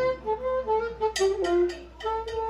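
A live banda playing a single melody line of held, sliding notes, with light cymbal taps in the second half.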